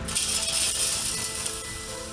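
A shovelful of loose fill poured down a steel chute: a sudden rattling hiss, loudest in the first second and fading out by about a second and a half. Background music with long held notes runs underneath.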